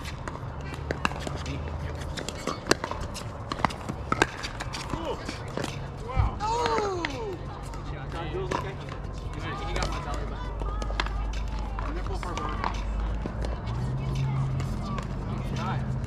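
Pickleball rally: sharp pops of paddles striking the plastic ball, several in the first few seconds, then indistinct voices of players and people nearby.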